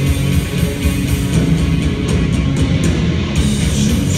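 Live heavy metal band playing at full volume: heavy electric guitars, bass and drums.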